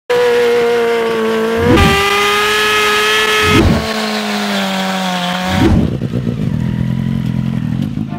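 Honda CBR600F4 inline-four held at high, steady revs for a burnout, with screeching from the spinning rear tyre. The engine note jumps abruptly three times, and after the last jump it runs at lower, rougher revs.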